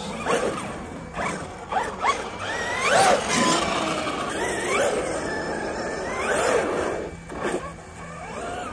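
Losi DBXL-E 2.0 1/5-scale electric buggy driving on asphalt, its brushless motor and drivetrain whining up and down in pitch again and again with the throttle.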